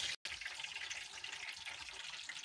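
Hot cooking oil sizzling in a frying pan as a steady hiss, cut off completely for a moment just after the start.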